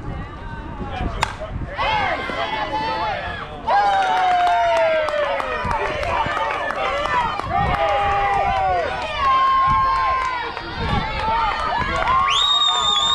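Softball bat striking the ball with one sharp crack about a second in, followed by spectators shouting and cheering loudly.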